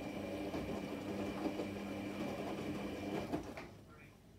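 Electra Microelectronic 900 front-loading washing machine running, its drum motor giving a steady hum as the drum turns the load of washing. The motor stops about three and a half seconds in, a pause in the drum's turning.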